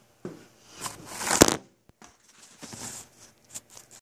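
Irregular rustling and scraping handling noises, loudest in a sharp scrape about a second and a half in, then smaller scattered rustles.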